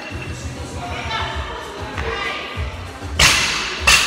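Loaded barbell with bumper plates dropped onto a rubber gym floor after a lift: a loud thud about three seconds in, then a second impact as it bounces, ringing in the large room. Gym music plays underneath.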